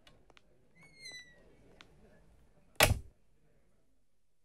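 A few faint clicks and a short falling squeak, then a glass-panelled door shuts with a single sharp thud about three seconds in.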